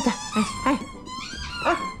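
Golden retriever whining in thin, high, gliding tones, with one drawn-out whine through the middle.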